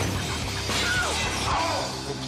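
A crash of something shattering and breaking, over music.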